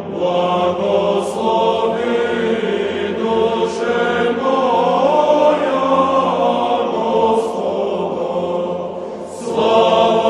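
Church choir singing a slow Orthodox chant, many voices holding long sustained notes. A new, louder phrase comes in near the end.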